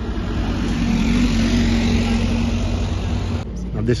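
A motor vehicle running close by: a steady engine hum over road noise, cut off abruptly about three and a half seconds in.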